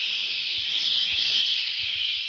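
A man's long, steady 'shhh' hiss, made with the mouth to imitate a running shower.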